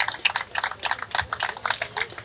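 Scattered clapping from a small crowd: a quick, irregular run of sharp claps after a speech ends.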